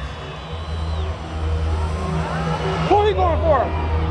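Loud supercross stadium ambience: a steady low rumble, with several voices shouting over it about two and a half to three and a half seconds in.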